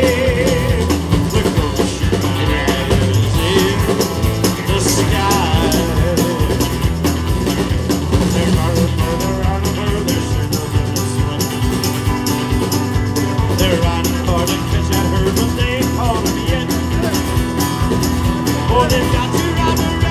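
Live band playing an amplified country-rock song with drums, electric and acoustic guitars, at a steady full level.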